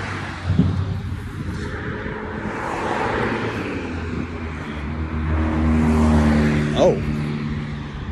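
A motor vehicle passing on the road: its tyre and road noise swells through the middle, and a low engine hum builds and holds in the second half.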